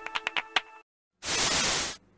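The tail of a short electronic ident jingle with clicking beats fades out, then after a brief silence a loud burst of static hiss lasts under a second and cuts off sharply, the noise of a scrambled picture.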